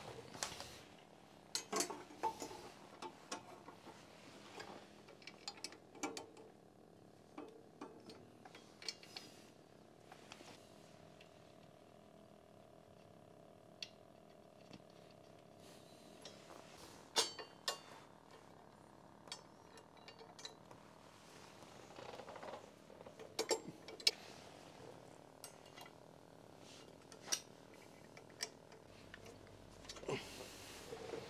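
Scattered light metallic clicks and clinks of bolts, washers and a steel motorcycle cover bracket being handled and fitted by hand, in short clusters with pauses between.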